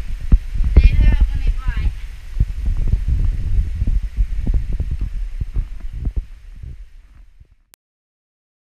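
Low rumbling and repeated dull thumps on the microphone, with a short wavering voice-like cry about a second in; the sound fades out to silence near the end.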